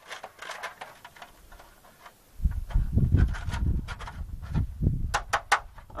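Small metallic clicks and scrapes as a nail is worked through the lined-up holes of a steel plate and an aluminum sluice box to hinge them. From about two seconds in, a loud low rumble with knocks takes over, with a few sharp clicks near the end.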